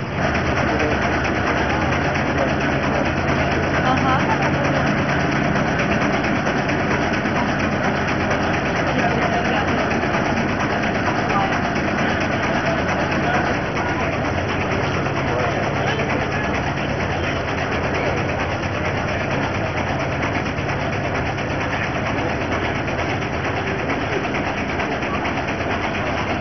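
An engine idling steadily, its low hum strongest in the first half, with people talking all around.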